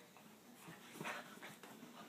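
A Boston terrier making one short vocal sound about a second in, with faint rustling as it moves on the bedding.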